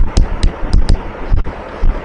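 Handwriting on a board during a lecture: a quick, irregular run of sharp taps and ticks, about four a second.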